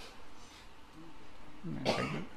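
A short pause in a man's speech into a microphone: faint room noise with a brief, faint hum in the middle, then his voice starts again near the end.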